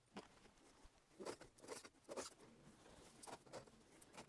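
Near silence with a few faint, soft footfalls as a person walks across a carpeted room, spaced about half a second apart.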